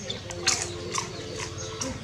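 A street dog snuffling and eating a snack from a person's hand, with a few sharp clicks, the loudest about half a second in and another about a second in.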